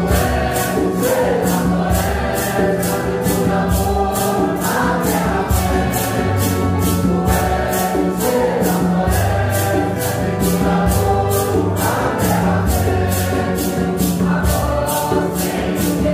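A congregation of men and women singing a Santo Daime hymn together in unison, with maracas shaken on a steady beat of about two and a half strokes a second.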